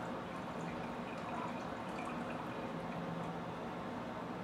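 Kombucha starter fluid pouring in a thin stream from a glass bowl into a gallon glass jar of tea: a faint, steady trickle.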